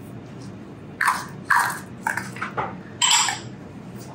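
Small glass prep dishes and utensils handled on a kitchen counter: three short clinks and knocks about one, one and a half and three seconds in, the last with a brief glassy ring.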